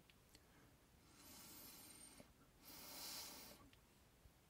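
Two faint breathy blows into an unfired clay ocarina, each about a second long, giving only an airy hiss with no clear note: the ocarina does not sing yet, probably because its airway is too messy and its blade not sharp enough.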